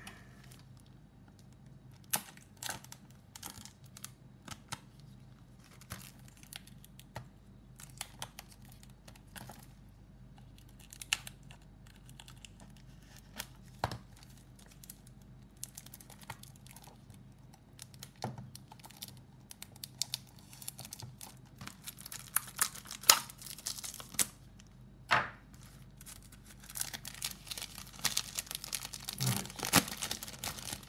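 Vacuum-sealed plastic wrap on a Blu-ray case being cut with a knife and torn away: scattered sharp clicks and scratches, building to a denser crinkling of plastic over the last few seconds.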